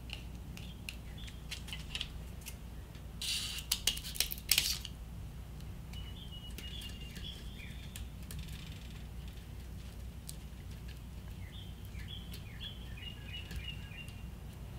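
Handling non-slip grip tape on a steel trailer tongue: light clicks, then a brief rasping burst about three to four seconds in as the gritty tape is worked. Faint high chirps come in twice in the second half, over a steady low hum.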